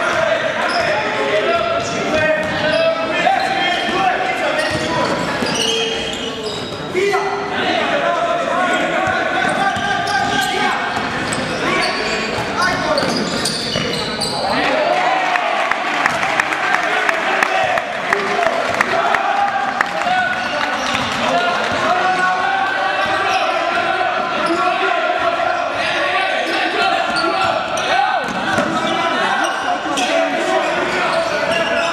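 Basketball game in an indoor sports hall: the ball bouncing on the court and players' feet thudding, under continual shouting voices of players, coaches and spectators, echoing in the hall.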